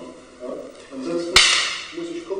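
Two wooden practice sticks striking together once, a single sharp clack about one and a half seconds in.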